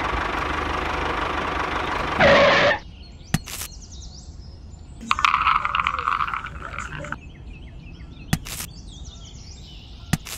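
Peanuts poured from a small woven basket rattle into a toy tractor trailer for about two seconds near the middle, over background frog and bird calls. Before that, a steady hiss swells and cuts off suddenly just under three seconds in, and a few sharp clicks stand apart.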